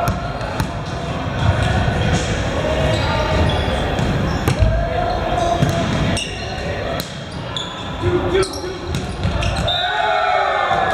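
A volleyball smacking repeatedly on hands and the hardwood floor of a gym during serve and rally, as a run of sharp, echoing hits, with players calling out over them.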